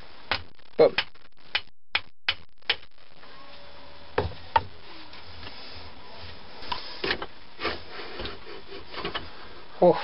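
A hammer tapping on a katana's wooden handle to knock loose a stuck part: about half a dozen sharp knocks in the first three seconds, two more about four seconds in, then softer knocks and handling noise as the part works free.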